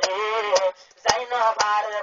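A man singing a Rohingya tarana over a regular percussion beat of about two strokes a second, the voice breaking off briefly a little under a second in.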